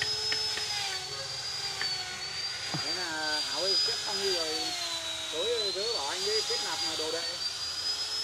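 A small motor running with a steady high whine whose pitch drifts slowly up and down, under people talking.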